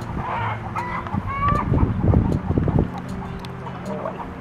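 Chickens clucking with a few short calls, with a patch of low rumbling noise about halfway through.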